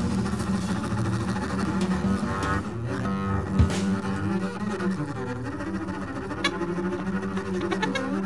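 Free-jazz trio music led by a bowed double bass playing sustained low notes and sliding, gliding pitches, with sparse cymbal and drum strikes.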